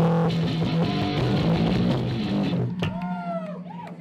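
Electric guitars played live through amplifiers, holding low notes and chords. They fade after a couple of seconds, and near the end a short tone bends up and down.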